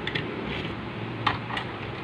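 A few light plastic clicks and taps as a small plastic Transformers MicroMaster toy car is handled and set onto the plastic ramp of a toy trailer, the clearest about a second and a half in, over a steady low hum.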